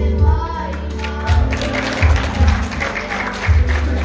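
Children singing through handheld microphones over a recorded backing track with a strong, pulsing bass line.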